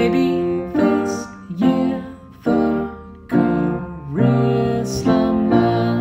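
Upright piano played as a ballad accompaniment: chords struck roughly once a second, each ringing and fading before the next. A man's singing voice is heard at the start and comes back near the end.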